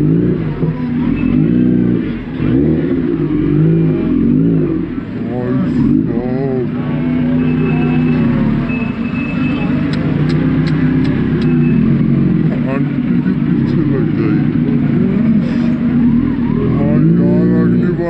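Kawasaki Z900's inline-four engine revved in repeated blips while stopped, its pitch rising and falling with each blip, over voices of a crowd around it.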